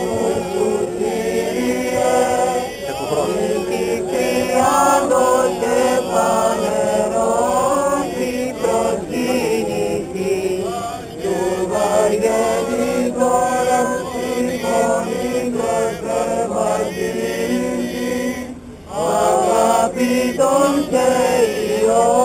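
Greek Orthodox Byzantine chant: several voices sing a melodic line over a steady, held low note (the ison). The singing breaks off briefly about nineteen seconds in, then resumes.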